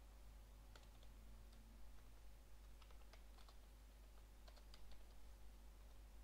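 Faint typing on a computer keyboard: a few short runs of keystrokes with pauses between them.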